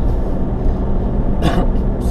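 Vehicle engine and tyres on a gravel track, heard from inside the cabin while climbing slowly up a steep grade under load: a steady low rumble, with a brief sharper noise about one and a half seconds in.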